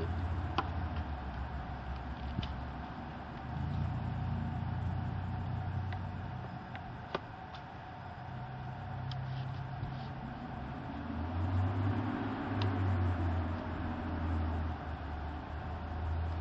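Low, uneven engine rumble of nearby motor traffic, growing louder in the second half. A few sharp, light clicks come from the metal detector's parts being handled.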